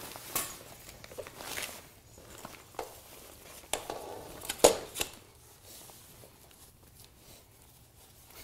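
Reflective reflector fabric rustling and crinkling as metal frame poles are fed through its sleeves, with scattered light clicks and knocks of the poles. The loudest is one sharp click about four and a half seconds in; the handling grows quieter in the last few seconds.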